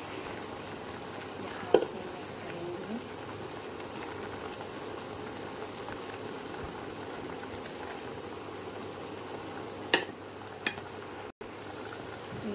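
Vegetables boiling in a steel pot, a steady bubbling hiss, while a masher crushes and mixes them. The masher gives a few sharp knocks against the pot: the loudest about two seconds in and two more near the end.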